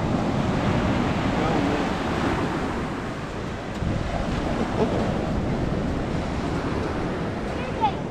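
Ocean surf breaking and washing up the sand in a steady rush, with wind on the microphone.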